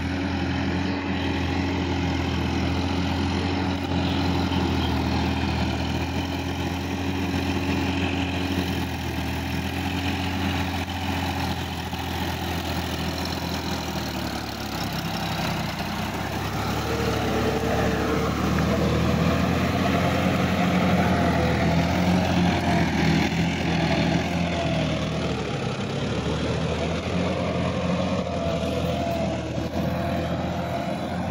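Sonalika tractor's diesel engine running under load as it pulls through deep paddy mud. Its note shifts about halfway through, and it runs a little louder and higher for several seconds after that.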